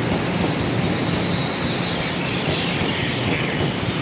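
Taiwan Railway EMU500 electric multiple unit rolling past at a platform as it runs into the station: steady wheel-on-rail rumble with a low, even hum, and faint high whistling sweeps near the end.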